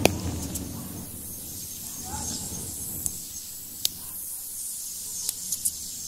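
Outdoor ambience: a steady high-pitched hiss with a few faint, sharp clicks scattered through it.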